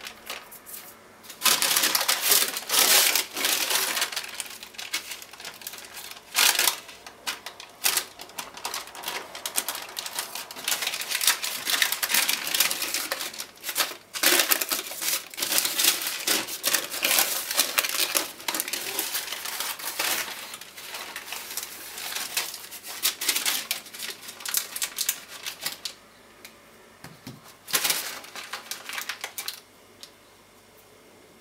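Sheet of baking parchment rustling and crinkling as it is handled and peeled away from a layer of butter on dough, in quick irregular crackles. The paper noise dies down a few seconds before the end, with one more short burst near the end.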